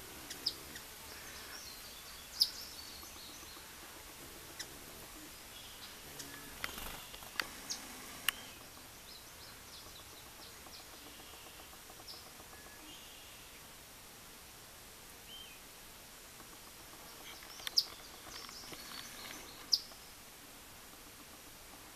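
Scattered short, high bird chirps over a steady outdoor background hiss, in small clusters near the start, in the middle and near the end.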